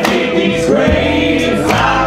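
Live string band playing, with upright bass under several voices singing together, and sharp percussive hits at the start and again near the end.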